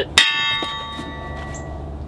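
A single metallic clang, then a ringing that fades out over about a second and a half: the hollow steel connector piece of a Disc-O-Bed bunk cot frame knocking against the metal frame as it is taken off.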